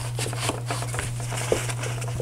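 Heavy rough-dried Fabriano watercolour paper being torn along a ruler's edge, a dry crackling rip made of many small ticks. A steady low electrical hum runs underneath.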